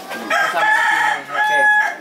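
A rooster crowing loudly: a long first phrase, a short dip, then a steady held final note.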